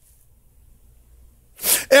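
A pause with only a faint low hum, then near the end a sharp, loud intake of breath by a man at the microphone just before he speaks again.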